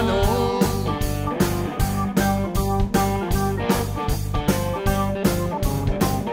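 A blues band playing an instrumental passage: electric guitar and Hammond organ over a steady drum beat.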